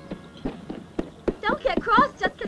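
Horses' hooves clip-clopping at a walk, an uneven run of sharp knocks several times a second. Short pitched voice-like sounds join in near the end.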